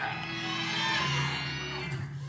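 Church keyboard playing sustained held chords over a low bass note, the chord shifting about halfway through.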